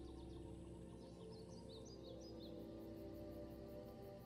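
Soft ambient background music of held, sustained tones, with a run of faint high bird-like chirps about a second in.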